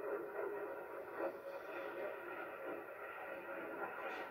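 Faint, muffled steady rumble of a distant F-16 jet flying past, played back through a TV's speakers and heard across the room, with little high end.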